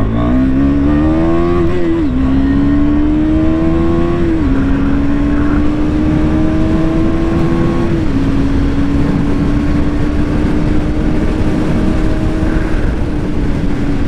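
KTM Duke 250's single-cylinder engine accelerating through the gears: its note rises, drops at upshifts about 2, 4½ and 8 seconds in, then holds nearly steady at cruising speed. Wind rushes over the microphone throughout.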